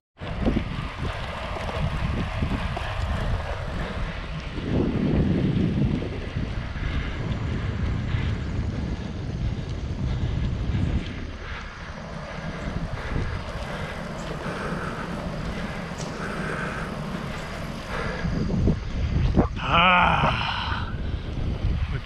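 Wind noise rushing over the microphone of a camera on a moving bicycle, a steady low rumble.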